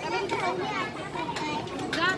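Many children's voices talking and calling out at once, high-pitched and overlapping, over the steady background noise of a large crowd.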